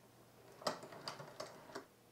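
Light clicking of a Prym hand-cranked knitting mill as its crank is turned and the latch needles work the yarn. It is an irregular run of soft ticks starting about half a second in.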